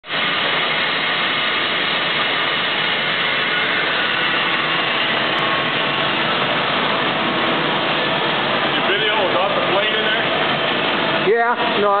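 Haeusler initial double-pinch plate bending rolls running under power: a steady, loud machine whir with no change in pitch, and a man's voice breaking in near the end.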